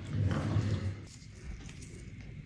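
A short, low vocal sound from a person, lasting under a second near the start, like a brief grunt.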